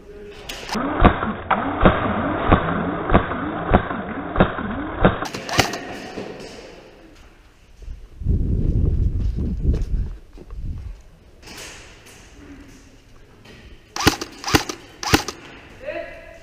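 Footsteps on a concrete floor at a steady pace, about one every half second, during the first few seconds. A low rumbling noise comes about eight seconds in. Near the end there is a quick series of five or six sharp cracks from an airsoft gun firing.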